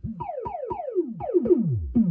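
Thomas Henry Bass Drum++ analog synth drum module firing repeated kick hits, about four a second, each a pitch that sweeps down from high to a deep low. The sweeps get longer and run into one another as a knob on the module is turned.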